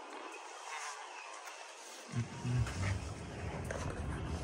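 The concrete pump's diesel engine running at a steady idle, a low rumble; the rumble drops away for about the first two seconds, leaving a thin hiss, then comes back.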